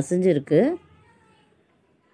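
A woman's voice speaking Tamil with rising and falling intonation for under a second, then near silence with only a faint hush.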